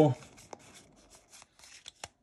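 A small stack of Pokémon trading cards being handled and slid against each other in the hands: faint rustling of card stock with a few light clicks.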